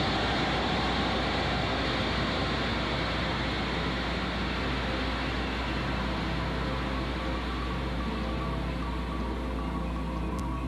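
Large audience applauding: a dense, steady clatter of clapping that starts suddenly and eases a little, over a low steady hum.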